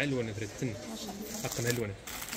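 Speech: a low-pitched voice talking.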